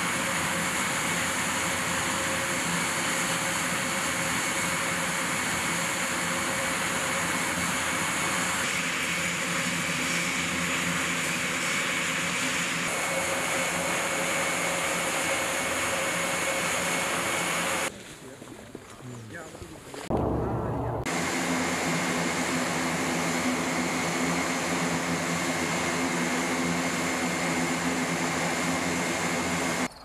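Airbus A400M transport's turboprop engines running on the ground with the propellers turning: a loud, steady drone with a whine and several steady tones. It drops away for about two seconds past the middle, then a short low rumble, and resumes.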